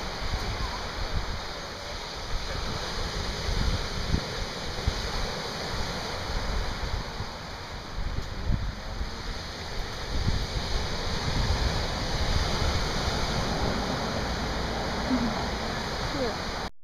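Ocean surf breaking and washing up on a sandy beach, a steady rushing wash, with uneven gusts of wind rumbling on the microphone.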